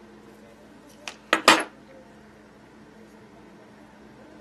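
Three quick, light metallic clinks, about a second in, from small metal fly-tying tools or materials being handled on the bench.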